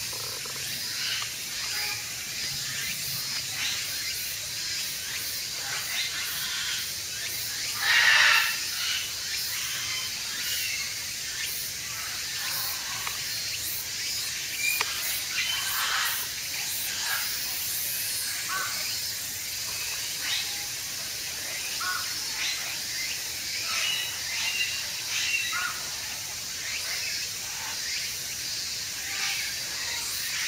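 Outdoor ambience of a bird enclosure: a steady hiss under many short, scattered bird calls. There is one brief, louder sound about eight seconds in.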